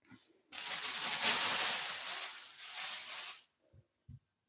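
A plastic bag of t-shirts rustling as it is rummaged through, a dense crinkling noise that starts about half a second in, lasts about three seconds, and stops abruptly.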